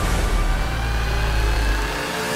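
Film sound design for a submarine breaching the sea surface: a loud, deep, steady rumble under a rushing noise of water pouring off the hull.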